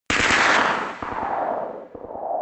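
A sudden rapid burst of sharp bangs that fades out with a trailing echo, followed about a second in by a second, quieter burst that also fades.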